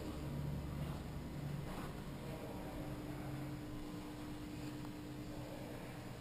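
A steady low machine hum with a faint even tone, and a couple of faint knocks early on.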